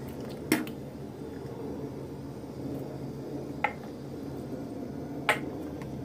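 Cups being handled at a bathroom sink: three short taps, about half a second in, in the middle and near the end, over a steady low hum.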